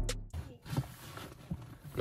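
Background music cuts off right at the start, leaving faint background noise with a few soft knocks.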